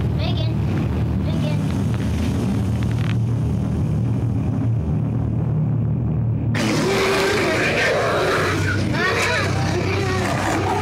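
Children's high-pitched squeals and voices over a steady low hum. About six and a half seconds in the sound changes abruptly to a louder, noisier scramble of several children's voices as they pile onto one another.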